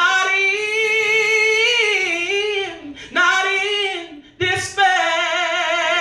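A man singing a solo gospel song unaccompanied into a handheld microphone, in a high voice, holding long notes with wide vibrato. The notes come in three phrases with short breaks about three seconds and about four and a half seconds in.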